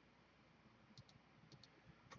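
Near silence with faint clicks from computer use: two quick pairs of clicks, about a second in and again half a second later.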